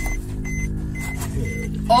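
A steady low droning hum with a rumble beneath it, and a few faint short high beeps at intervals.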